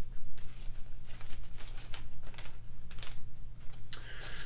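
Small plastic bag of spare propeller blades crinkling and rustling in irregular bursts as it is handled and opened.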